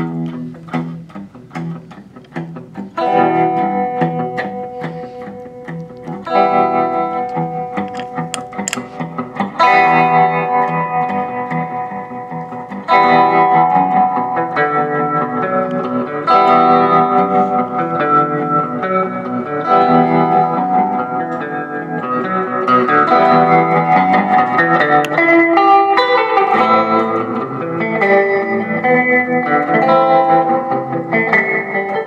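Electric guitar played through a Fender Tre-Verb pedal, its notes and chords carrying tremolo and reverb. The playing starts sparse and quieter and grows fuller and louder after about ten seconds.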